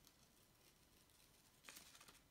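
Near silence, with one faint snip of small scissors cutting through paper near the end.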